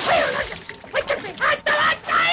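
A cartoon character's gibberish, Italian-sounding voice in short excited bursts, with water splashing.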